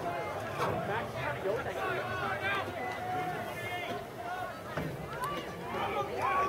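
Background chatter of a crowd: several overlapping distant voices talking and calling out, with no single loud event.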